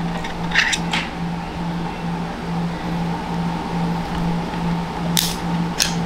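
Plastic clicks as a replacement lens is flexed and worked out of an Oakley Sutro sunglasses frame: a couple of sharp clicks within the first second and two more near the end, over a low hum that pulses about twice a second.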